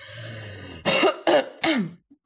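A woman clears her throat behind her hand, then gives three short coughs, each falling in pitch.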